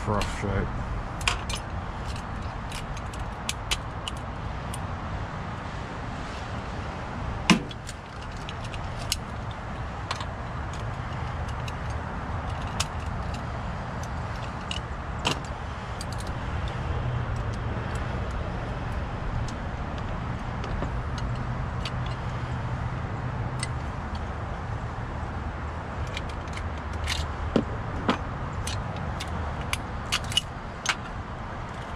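Metal parts of key-in-knob door locks clicking and clinking as they are handled and taken apart by hand for rekeying, with a sharper knock about seven and a half seconds in. A steady low rumble runs underneath.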